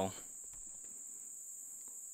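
Steady, high-pitched chorus of insects, one even unbroken trill.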